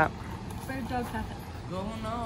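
Quiet, low talking over a steady low rumble of outdoor background noise.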